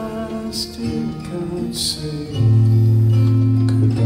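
Acoustic guitars playing slow, held chords; about halfway a deep bass note comes in and the music gets louder.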